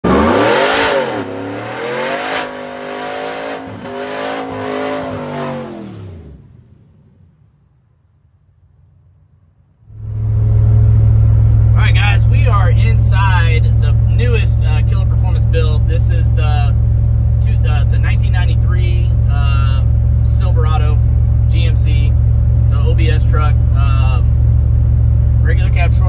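Supercharged LT5 V8 in a 1993 Chevy pickup, revved up and back down about three times, then fading away. After a pause, from about ten seconds in, a steady low drone of the truck cruising on the highway, heard inside the cab, with a man talking over it.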